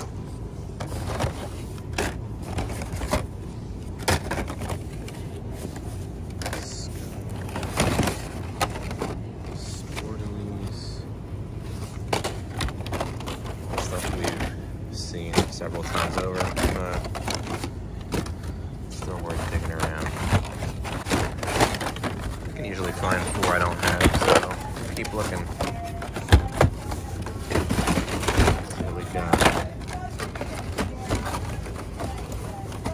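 Cardboard-and-plastic blister packs of die-cast toy cars being shuffled through by hand: many irregular clacks, knocks and scrapes of packaging. Under them run a steady low hum and background voices.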